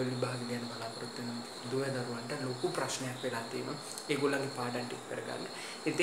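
A man talking in Sinhala. Behind his voice runs a steady high-pitched insect trill, like crickets.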